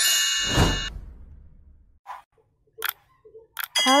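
Intro sound effects: a bright chiming ding that stops about half a second in, a whoosh that fades away over the next second and a half, then three short clicks about two, three and three and a half seconds in.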